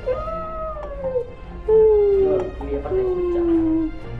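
A howling voice: several long, drawn-out notes, each sliding slowly down in pitch, over quiet background music.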